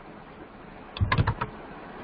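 Computer keyboard keys pressed in a quick run of four or five clicks about a second in, over a steady hiss.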